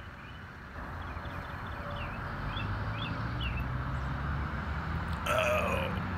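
Low steady rumble with a few faint high chirps. Near the end a person makes one short vocal sound that falls in pitch, like a burp or grunt.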